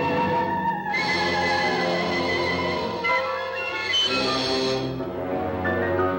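Orchestral horror film score: held, stacked chords that shift every second or so, with no dialogue over them.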